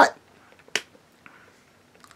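A single short, sharp click about three quarters of a second in, then quiet room tone.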